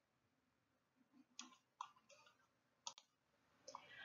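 Near silence: room tone, with three or four faint, short clicks spread through it.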